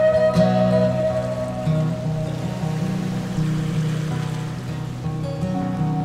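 Instrumental background music: a held note fades over the first few seconds while a low bass line steps beneath it, and a new note comes in just after the end.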